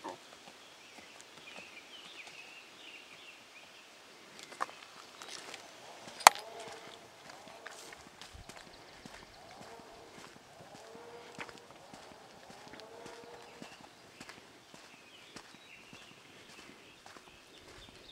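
Footsteps on a dirt trail with scattered soft clicks and rustles, against faint outdoor ambience; a single sharp click about six seconds in stands out as the loudest sound.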